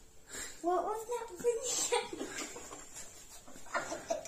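A child's voice, a second or two of indistinct talk, then quieter with a few short clicks near the end.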